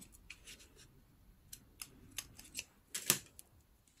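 Scissors snipping through thin craft string: a few short, faint clicks, with the loudest snip about three seconds in.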